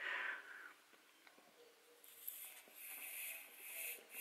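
Faint hiss of air blown by mouth through a plastic tube into a PWK carburettor's power jet passage, in a few short puffs from about two seconds in. The blowing tests whether the adjustable power jet lets air through or blocks it.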